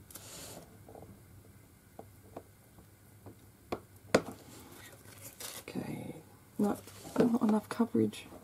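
Light clicks and taps of a clear acrylic stamp block pressed onto a plastic-cased ink pad, with a sharp click about four seconds in. A person's voice is heard briefly near the end.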